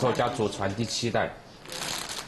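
A man speaking Chinese, with the crinkle of a plastic snack bag being handled.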